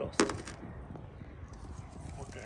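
A single short spoken word at the very start, then low, steady background noise with no distinct sound in it.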